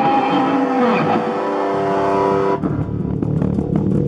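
Heavy metal band music: distorted electric guitars holding long notes, one bending down in pitch, then about two and a half seconds in switching to a low, choppy riff with drums.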